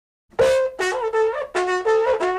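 A short melody of trumpet-like brass notes, starting about a third of a second in, each note held for under a second before moving to the next.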